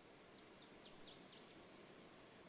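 Very faint outdoor ambience: a soft, even rush of water with a few quick, high bird chirps between about half a second and a second and a half in.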